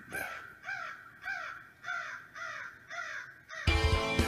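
A crow cawing repeatedly, a run of about six caws at an even pace, roughly half a second apart. Near the end, loud music with drums and guitar cuts in.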